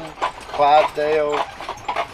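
Hooves of a team of draft mules clip-clopping on a paved road as they pull a wagon, under a man's slow, drawn-out speech from about half a second in.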